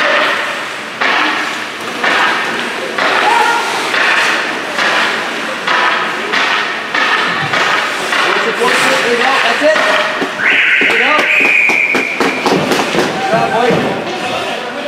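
Voices of players and spectators calling out in a rink, with scattered knocks and clacks of sticks on ice. A referee's whistle blows about ten and a half seconds in and lasts nearly two seconds, stopping play.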